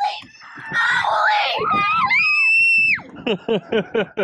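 Excited, high-pitched screaming: an excited yell, then one long, very high shriek held for about a second that cuts off sharply, then laughter near the end, as a big snapper comes up beside the boat.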